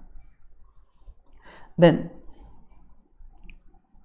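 A few faint, short clicks from the lecturer marking up the on-screen notes, with one spoken word about two seconds in as the loudest sound.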